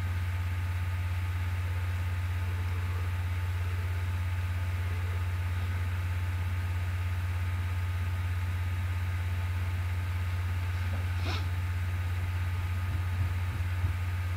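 A steady low hum with faint hiss, unchanging throughout. A brief faint sound comes about eleven seconds in, and a few soft low knocks come near the end.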